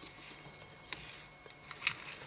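Soft rustling of synthetic fly-tying fibres being stroked and pulled back through a clear plastic straw, with two light sharp clicks, one about a second in and a louder one near the end.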